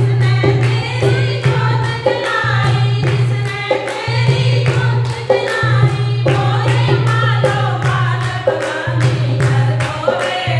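Group of women singing a Hindi devotional bhajan in unison, keeping time with hand claps about twice a second, over a dholak.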